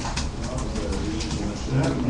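A man's voice: a low, drawn-out hesitation hum between phrases over a steady room murmur, then speech starting again near the end.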